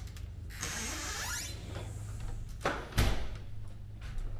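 A sliding glass door rolling along its track with a rising squeak for about a second, then a single sharp thump about three seconds in.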